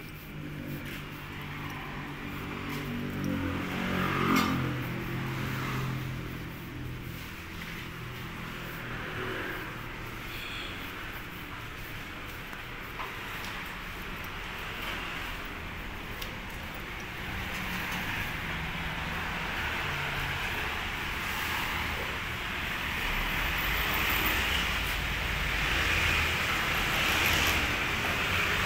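A bus engine running, a low steady hum that swells briefly about four seconds in, with a deeper rumble growing stronger over the last few seconds.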